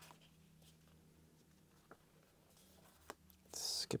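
Quiet handling of a large hardcover book's paper pages: a few faint soft ticks, then near the end a brief, louder hiss of paper sliding just before a spoken word.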